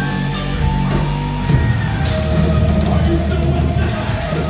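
Live thrash metal band playing loud: distorted electric guitars, bass guitar and drum kit.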